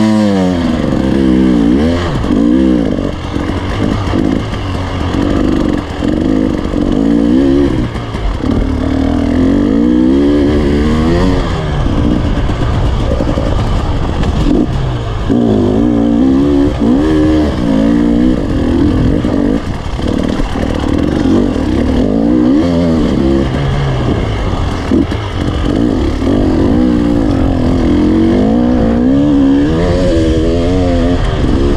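Enduro dirt bike engine heard from the rider's helmet, revving up and dropping back again and again as the rider accelerates, shifts and slows over rough track.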